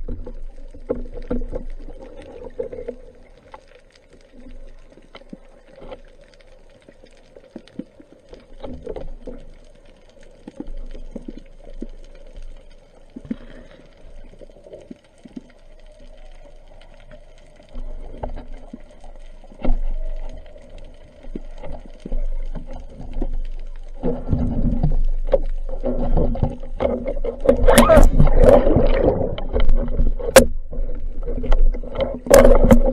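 Underwater noise picked up by a camera hanging in the sea: a low steady hum of moving water with scattered knocks against the housing. It grows louder and busier over the last several seconds as the camera is handled.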